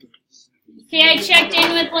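A woman's voice speaking to a class, starting about a second in after a brief near-quiet moment.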